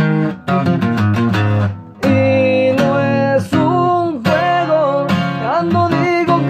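A 12-string acoustic guitar (docerola) playing a quick picked run of single notes, then ringing chords. A man's singing voice comes in over it about four seconds in.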